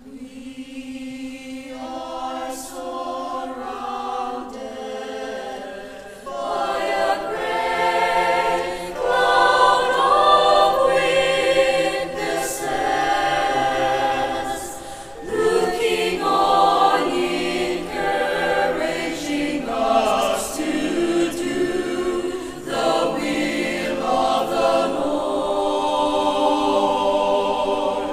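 Small mixed choir of women's and men's voices singing a cappella. It starts softly and grows fuller and louder about six seconds in.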